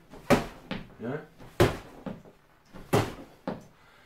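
Three sharp knocks, about one every second and a half, among a man's brief words.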